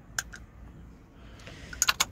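Radiator cap being fitted back onto the filler neck and turned closed: a couple of faint clicks early on, then a quick cluster of sharper clicks as it seats near the end.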